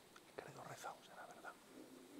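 Faint, hushed speech, close to a whisper, beginning about half a second in.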